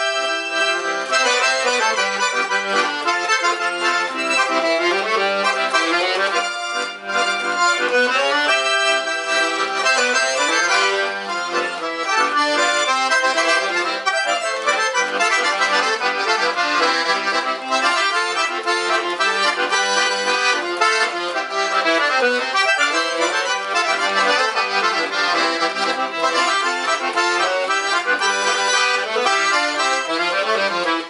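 Piano accordion played without a break: a melody on the treble keyboard over chords from the bass-button side, in a traditional gaúcho tune.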